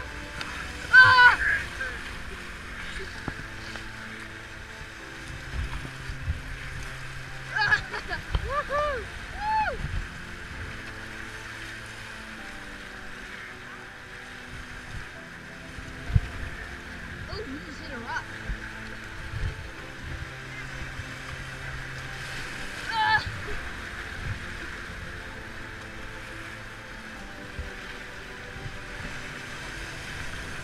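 Whitewater rapids rushing steadily past an inflatable raft, with a few short shouts and whoops from the rafters: the loudest about a second in, more around eight to ten seconds in, and another past the twenty-second mark.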